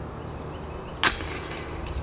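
A disc striking the chain assembly of a disc golf basket about a second in: a sudden metallic jingle that rings on and fades, the sound of a putt going in.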